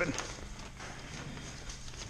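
Quiet garage room tone: a low steady hum with a few faint clicks.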